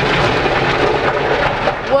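Automatic car wash spraying water and soap onto the car, heard from inside the cabin as a loud, dense, steady rush on the windshield and roof.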